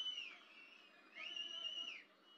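Two long high whistles, each sliding up, holding its pitch, then dropping away. The first fades in the opening moments and the second starts a little past the middle.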